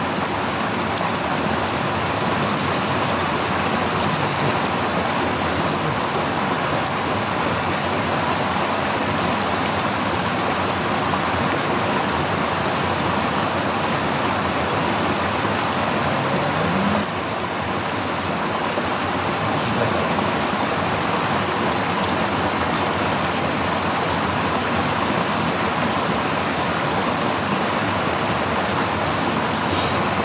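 Steady rush of flowing water, even in level throughout, briefly dipping about seventeen seconds in.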